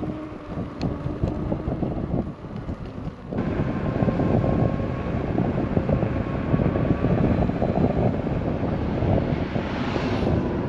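Wind noise buffeting a helmet-mounted camera microphone while riding an electric unicycle. It turns suddenly louder and denser about three seconds in.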